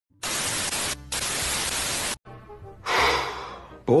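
TV static hiss for about two seconds, with a brief break about a second in, cut off sharply. Then a quieter stretch with faint tones and a short rushing swell of noise that fades.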